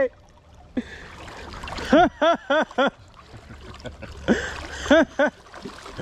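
Water splashing and sloshing around a large striped bass thrashing in shallow river water as it is held by hand. A man gives short repeated shouts, four quick ones about two seconds in and a couple more near the end.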